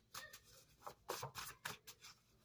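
Hands shuffling and flicking through a stack of paper cards: a quick, irregular run of soft card slaps and rustles, about seven in two seconds.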